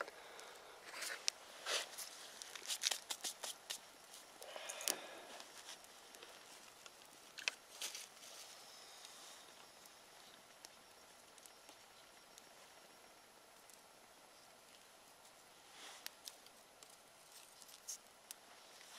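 Faint crackles and rustles of a small twig fire, with dry sticks being handled and fed into it. The clicks are busiest in the first few seconds, thin out to near stillness, and pick up again briefly near the end.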